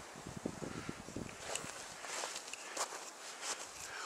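Quiet, irregular footsteps in snow.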